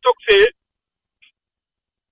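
A caller's voice coming over a phone line: a short stretch of speech at the start, then silence.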